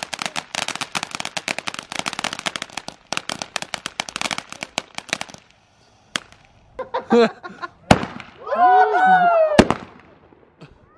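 Crackling ground fountain firework giving a dense, rapid stream of crackles for about five seconds, then dying away. A few sharp bangs follow, and a voice calls out near the end.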